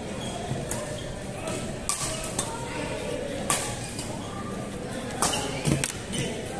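Badminton rackets striking a shuttlecock in a rally: about six sharp, crisp hits at irregular intervals, ringing in a large echoing hall over a background murmur of voices.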